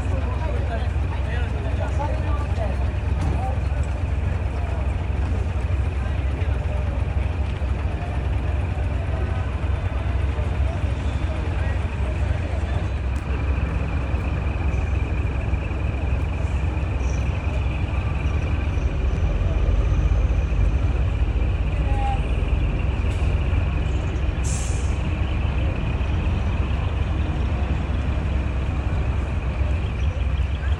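Heavy diesel vehicle's engine running at low speed as a steady deep rumble, getting a little louder about two-thirds of the way through. Near the end comes a short, sharp hiss of air, typical of an air-brake release.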